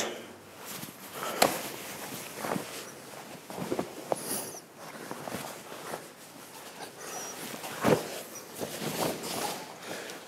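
Bare feet shuffling and stepping on a foam mat and karate uniforms rustling as two people move through a partner drill, with a few short soft thuds of contact, the clearest about a second and a half in and about eight seconds in.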